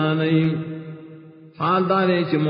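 A man chanting a religious recitation on a steady, held pitch. One phrase trails off about a second in and a new one begins near the end.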